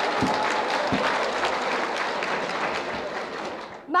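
An audience applauding: dense, steady clapping that thins out just before the end.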